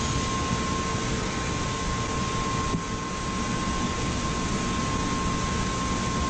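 Steady machine-room noise from an automated CNC panel-storage and router line, an even whir with a constant high hum tone throughout and a brief dip about three seconds in.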